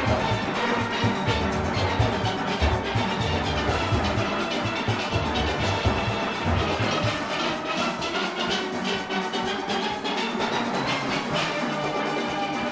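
Large steel orchestra playing live: massed steelpans over an engine room of drum kit and congas. The bass pans are strong in the first half and drop back about halfway through.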